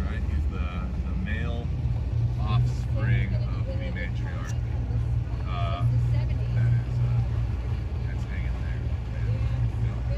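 A boat's engine running steadily at idle, a continuous low hum, with people's voices talking indistinctly over it.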